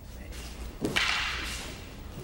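A wooden practice weapon swung hard, a sudden swish about a second in that fades within half a second, just after a short low thud.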